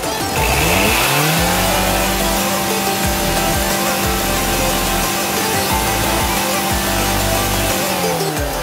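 A car engine is revved up over about a second and a half, held at high, steady revs, and starts to drop right at the end, with background music underneath.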